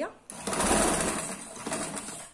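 Electric sewing machine running in one continuous stretch of stitching, sewing an inward-folded hem around a sleeve opening. It starts about a third of a second in and is loudest early on, settling a little before it stops at the end.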